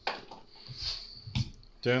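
A large empty glass jar handled and lifted off a wooden table, with soft handling noise and a single sharp knock about one and a half seconds in.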